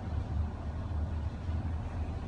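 Traction elevator cab travelling in its shaft: a steady low hum and rumble of the ride.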